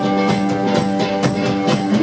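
A live 1960s-style freakbeat/garage-rock band playing an instrumental stretch between sung lines. A drum kit keeps a steady beat of about three to four hits a second under held guitar chords.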